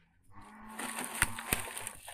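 Woven plastic sacks of scrap rustling and scraping against leaves and stems as they are carried through vegetation, with two sharp cracks a little after a second in.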